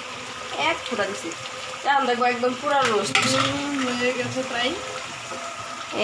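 Chicken roast in gravy sizzling as it simmers in a metal pan on the stove, a steady frying hiss. Voices talk in the background over it.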